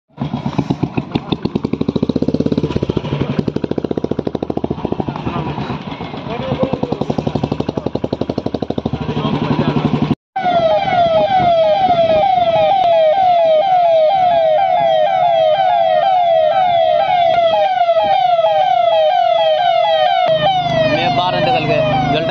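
Royal Enfield Bullet single-cylinder motorcycle engine running, with voices around it. After a sudden cut about ten seconds in, an electronic siren from a vehicle's roof loudspeakers sounds a repeating falling wail, about one and a half sweeps a second, with voices coming in near the end.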